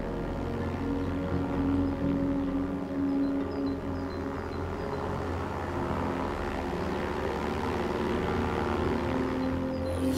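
Propeller-driven crop-dusting airplane droning steadily as it flies low, spraying a field.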